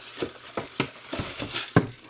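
Packaging being handled while a helmet is unboxed: a string of light rustles and sharp clicks at an uneven pace.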